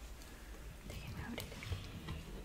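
Clothes on hangers being pushed along a wardrobe rail: soft fabric rustling with a couple of light clicks about halfway through.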